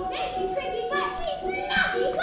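Many children's voices talking and calling out at once, over a steady high hum.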